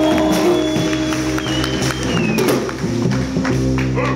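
Live band music: electric violin and electric guitar playing together, with long held notes and a high note that slides downward about halfway through.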